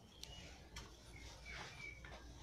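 Near silence: room tone, with a couple of faint clicks and a few faint, short high chirps in the second half.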